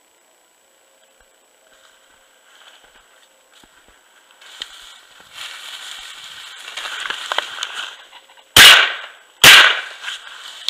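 Two shotgun shots, a little under a second apart, near the end. They are the loudest thing here and each rings on briefly. Before them, dry grass and cattails rustle as they are pushed through, louder from about halfway in.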